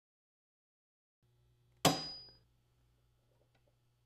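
One sharp hammer tap on a pointed punch held against the snowmobile's metal tunnel, about two seconds in, with a short high metallic ring after it. The tap punches a centre mark for a drill hole.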